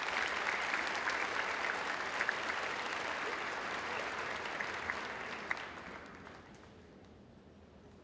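Large audience applauding in an arena, the clapping dying away about six seconds in.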